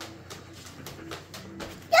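Faint, irregular clicking of a small dog's claws on a vinyl-plank floor as she walks on leash.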